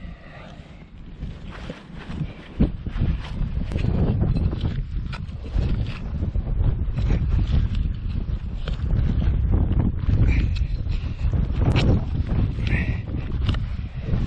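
A hand digging tool scraping and cutting into turf and soil, with many short crunches and scrapes, over wind buffeting the microphone.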